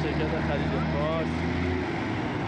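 A vehicle engine running with a steady low hum that stops near the end, under men's voices talking in the crowd.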